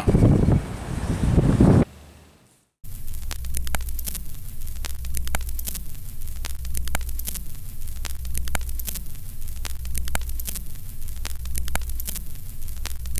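Old-film countdown leader sound effect: crackling, regularly clicking film-projector noise over a steady low hum. Before it, about two seconds of loud rumbling noise cut off by a brief silence.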